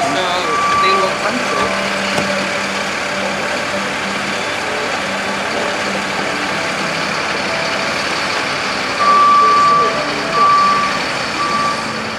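A fire engine idling steadily, with a high electronic beep sounding once shortly after the start and three more times near the end, the first of those about a second long.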